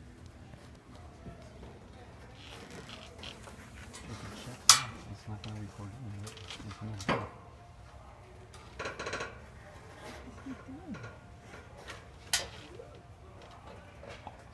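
Occasional sharp metal knocks and clinks from steel pallet-rack shelving as a person climbs along it, the loudest about five seconds in, others about seven seconds in and near the end, with a short rattle between them.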